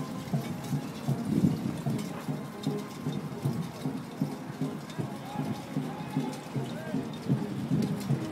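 Indistinct voices over a steady crackling background noise.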